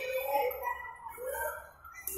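Children's voices calling and chattering in a busy play hall, fading for a moment near the end.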